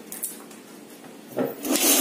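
Handling noise: something rubbing against the recording phone, with a short scuff about a quarter second in and two louder rubbing passes near the end.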